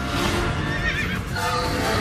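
A horse whinnying, a warbling call about a second in, over background music.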